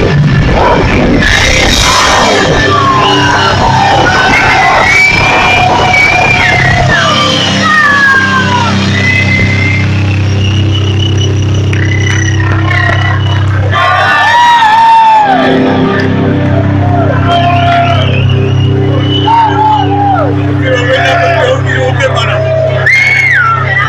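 Live punk rock band playing loud electric guitars and drums through a PA in a large hall. About seven seconds in the drums drop out and a held low note rings on, with voices yelling over it.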